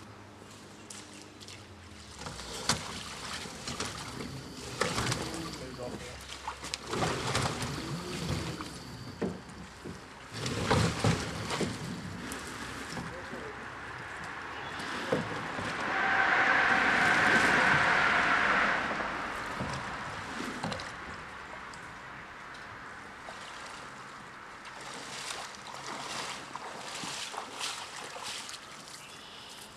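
Shallow river water splashing and sloshing as a person wades in with the red float of a submersible pump, with scattered knocks. About sixteen seconds in, a louder hiss with a steady whine lasts about three seconds.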